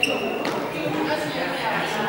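Indistinct chatter of several people's voices in a large, echoing hall. A short, high ping comes right at the start, and a brief knock about half a second in.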